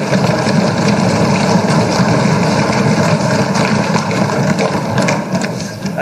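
Many assembly members thumping their desks together in applause: a dense, steady clatter of overlapping blows with no speech.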